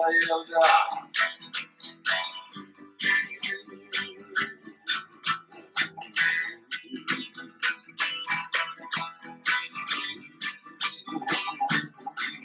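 Acoustic guitar strummed in a steady rhythm of about four strokes a second, an instrumental stretch of a song.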